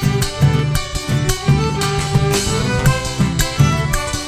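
Live Argentine folk band playing a chacarera instrumental passage: strummed acoustic guitars, violin and accordion over a steady bombo drum beat.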